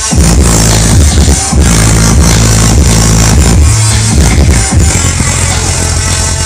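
Very loud electronic dance music with a heavy, pounding bass line played through a large outdoor DJ speaker stack. The bass comes back in hard at the very start after a brief dip.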